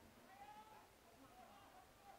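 Near silence, with a faint, distant voice calling out in a high drawn-out note about half a second in, and a few shorter faint calls after it.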